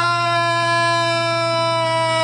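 A man's single long wail held on one steady note, drifting slightly lower in pitch, as he breaks down crying.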